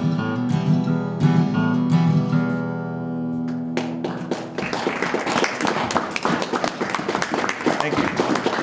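Acoustic guitar holding and ringing out its closing chord, which stops sharply about three and a half seconds in. The audience then applauds.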